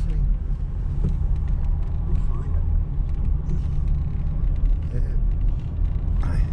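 Road noise inside a moving car's cabin: a steady low rumble from the engine and tyres as it drives at low speed.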